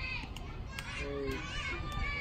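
High-pitched girls' voices calling out and cheering on the batter, several overlapping at once, over a low rumble.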